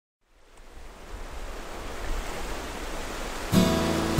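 Surf washing on a beach, fading in from silence and growing steadily louder. About three and a half seconds in, a Martin GPCPA5K acoustic guitar starts strumming.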